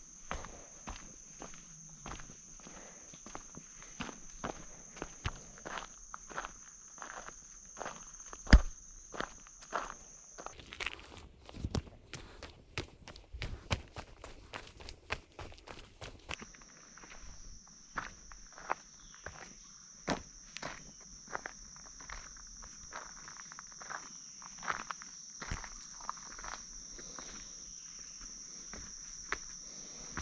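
Footsteps on a dirt-and-gravel trail with timber-edged steps, an irregular crunch and knock one or two times a second, with one much louder knock a little over a quarter of the way in. Under them runs a steady high insect drone, which jumps to a much higher pitch for several seconds in the middle and then drops back.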